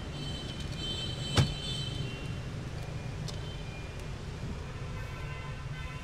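A single sharp click about a second and a half in, over a steady low hum: a car seat's adjustment mechanism being worked.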